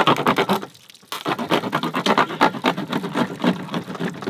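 Serrated knife sawing through a plastic five-gallon water jug in quick rasping strokes, with a short pause about a second in, to cut free a harpoon lodged in it.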